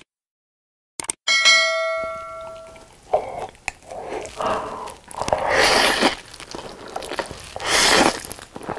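A couple of clicks and a bright bell chime ringing out for about a second and a half, a subscribe-notification sound effect. Then close-miked eating: chewing sauced fried chicken and slurping black bean noodles, with a long loud slurp past the middle and another at the end.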